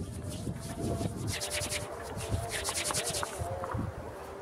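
Handling noise on a compact camera: two runs of rapid, high scratchy rubbing close to the microphone, about a second in and again near the end, over low wind rumble and faint distant city sound.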